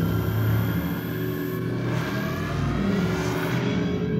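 Electronic soundtrack: a low steady drone with several higher tones gliding slowly upward in the middle, rising like an engine revving.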